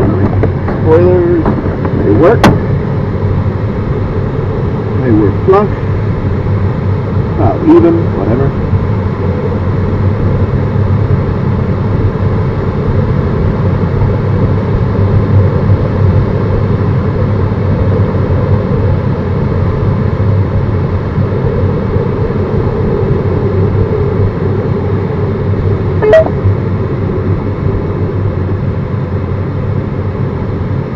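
Steady rushing airflow noise in the cockpit of an LS4 sailplane gliding without an engine on its landing approach, with a sharp click about two seconds in and another near the end.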